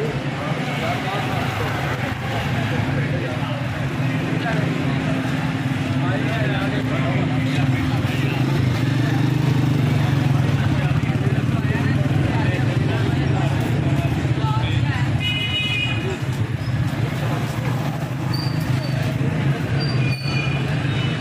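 Busy street traffic of motorcycles and auto-rickshaws, their engines running in a steady drone under the chatter of passing people. A vehicle horn sounds briefly about three-quarters of the way in, and again near the end.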